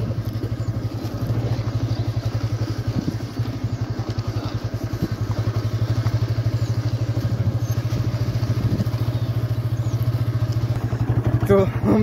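A TVS Apache motorcycle's single-cylinder engine running steadily as the bike is ridden along a rough village track, heard from the bike itself. A man's voice comes in near the end.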